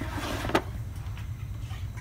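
A stone dental cast and a metal dental surveying table being moved about and set down on a plastic bench pad: soft handling rustle and one sharp click about half a second in, over a steady low hum.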